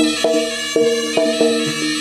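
Live jaranan accompaniment music: a melody of short held notes stepping between a few pitches several times a second, over light percussion.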